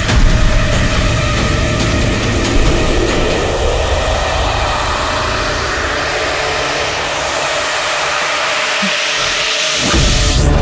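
Film suspense score and sound design: a dense, rumbling drone. Its low end thins out over the last few seconds, and a rising whoosh sweeps up near the end.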